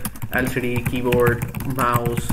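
Keys tapped on a computer keyboard as words are typed, with a man's voice talking over the clicking.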